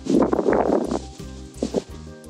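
Hands pulling weeds from soil littered with pine needles: a dense crackling rustle in the first second, then a couple of short scuffs. Background music with a steady bass beat plays throughout.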